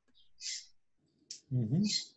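A soft click and a short breathy hiss in a pause, then a brief voiced sound from a man with a rising pitch near the end.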